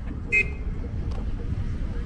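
A car horn gives one short toot about a third of a second in, over the steady low rumble of slow passing traffic.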